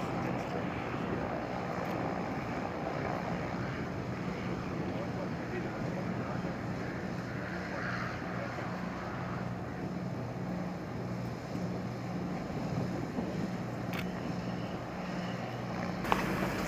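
Piston engines of a twin-engine light propeller plane running on the apron: a steady engine drone with a slow, regular throb.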